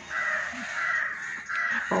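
A harsh, rasping bird call: one long stretch of more than a second, then a shorter one.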